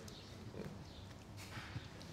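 Quiet room tone in a seated audience during a pause, with faint murmuring and a single sharp click about one and a half seconds in.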